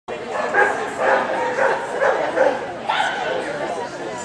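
A dog barking repeatedly, about five short barks roughly half a second apart, followed by more vocalising about three seconds in.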